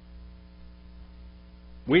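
Steady electrical mains hum, a low buzz with a row of even overtones, during a pause in speech. A man's voice starts right at the end.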